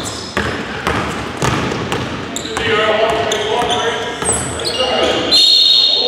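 A basketball dribbled on a hardwood gym floor, about two bounces a second, ringing in the large hall. From about halfway, players shout and call out, with a high steady squeal near the end.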